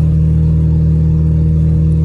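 Steady low drone of a car heard from inside the cabin while driving, with no change in pitch or level.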